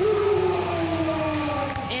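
A woman's long, wordless vocal exclamation, one held note whose pitch slowly falls over nearly two seconds, voicing excitement.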